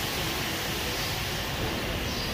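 Steady machinery noise in a rotary milking shed: an even rumble and hiss with no distinct knocks or changes.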